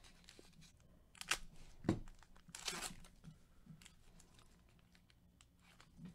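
A foil trading-card pack being torn open and crinkled by gloved hands: a few short tears and rustles, the longest about two and a half seconds in, with a soft thump just before it. Faint clicks of the cards being handled follow.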